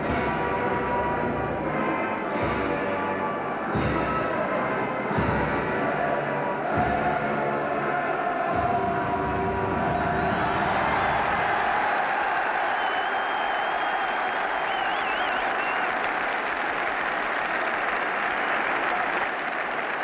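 Orchestral music with a heavy drum beat about every second and a half, giving way about ten seconds in to a large stadium crowd cheering and applauding, with one shrill whistle heard briefly over the crowd.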